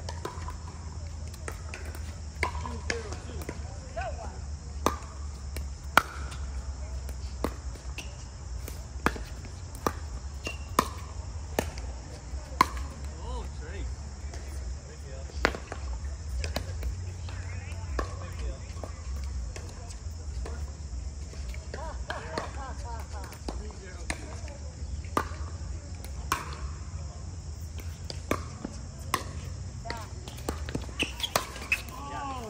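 Pickleball paddles striking the hollow plastic ball in sharp pops during rallies, coming at irregular intervals about a second apart, over a steady low rumble.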